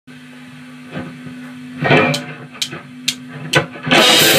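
Drumsticks clicked together four times, evenly about half a second apart, counting in the band over a steady low hum, with a couple of duller knocks before them; the full rock band with drum kit and distorted guitar comes in on the next beat at the very end.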